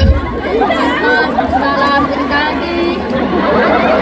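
Many voices singing together loudly, the crowd singing along with a girl's amplified vocal, with a low thump at the very start.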